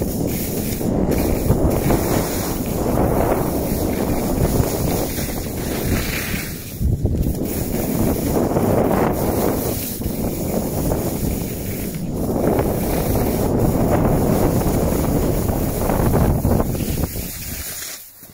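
Wind buffeting a phone's microphone while skiing downhill, mixed with the hiss of skis sliding over snow. The noise swells and eases in waves every few seconds and drops away suddenly at the end as the skier stops.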